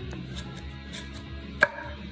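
Nordquist Designs Bastogne S-grind nakiri slicing down through the stem end of a butternut squash, finishing with one sharp knock of the blade on the wooden cutting board about one and a half seconds in, with a brief ring.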